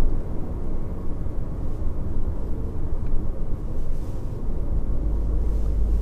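Steady low engine and road rumble inside the cabin of a Jeep Renegade with the 1.0-litre, 120 hp petrol engine, driving uphill. The low rumble grows heavier near the end.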